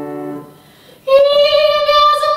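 A grand piano chord fades out, then after a short pause a young woman's singing voice comes in about halfway through, holding one long note that rises slightly.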